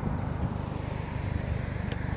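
A car's steady low engine and tyre rumble, with a small knock about half a second in and a short click near the end.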